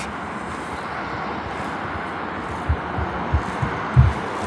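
Suspense heartbeat sound effect: a few low, soft thumps in the second half over a steady hiss.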